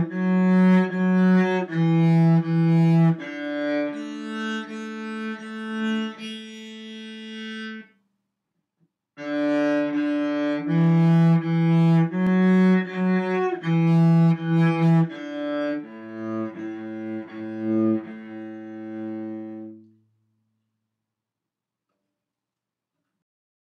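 Solo cello bowing a simple tune in detached notes: D, D, E, E, F-sharp, F-sharp, E, E, D, then repeated open A's ending on a longer A. After a short break about eight seconds in, the phrase comes again and ends on repeated lower A's, stopping about two seconds before the end.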